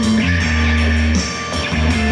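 Electric guitar played over a backing track with a prominent, moving bass line.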